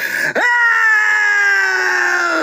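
A person yelling a long, drawn-out "Out!", one held shout lasting about two seconds that slowly falls in pitch.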